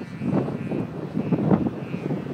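Wind gusting on the microphone in strong wind, loudest in bursts about half a second and a second and a half in, over the faint steady whine of a radio-controlled Ultra Stick plane's motor.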